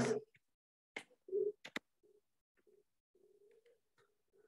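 A dove cooing softly in the background: a series of short, low, even-pitched coos, the clearest a little over a second in. A few clicks from computer keys come between them.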